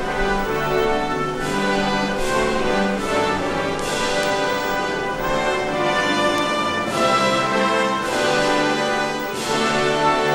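Slow orchestral music with brass, in long held chords that change about once a second.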